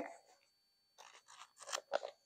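Faint rustling and scraping of a handbag and its dust bag or wrapping being handled, a quick run of short rustles starting about halfway through.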